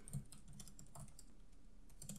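Computer keyboard being typed on: faint, quick, irregular key strokes, the loudest just at the start.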